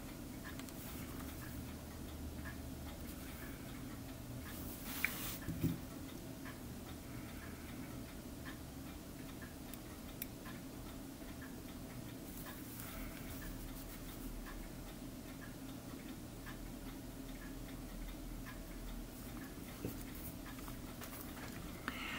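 Quiet room tone: a steady low hum with faint ticking about once a second, and a couple of slightly louder small clicks about five seconds in.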